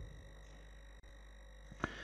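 Faint room tone of a hall with a public-address microphone: a steady low hum and a few steady high tones, with one brief short sound near the end.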